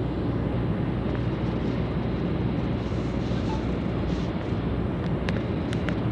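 Steady road noise of a vehicle driving at speed, with the rumble of tyres and wind heard from inside the vehicle. A few faint, short ticks come near the end.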